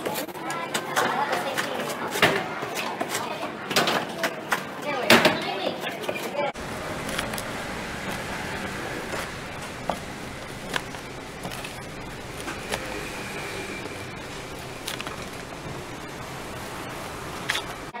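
Pizza being cut in its cardboard box: a few sharp crunching strokes of a cutter through crust against the cardboard. About six seconds in, the sound changes abruptly to a steady noisy background with indistinct voices and faint clicks as a rolling cutter wheel runs through a pepperoni pizza.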